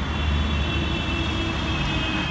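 Street traffic noise: a motor vehicle's engine running close by with a steady low rumble, and a faint steady high whine above it.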